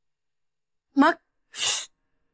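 A woman's short cry rising in pitch, then a sharp, breathy hiss about half a second later.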